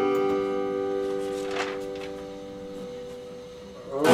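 Epiphone acoustic-electric guitar chord ringing out and slowly fading, with a faint touch of string noise about a second and a half in; a new strum starts right at the end.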